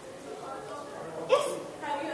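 Indistinct speech in a large hall, with a short, sharp vocal outburst a little over a second in.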